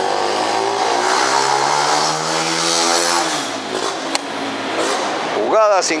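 A motor vehicle's engine accelerating past, its pitch climbing slowly for about three seconds before it fades out. A single sharp click comes a little after four seconds in.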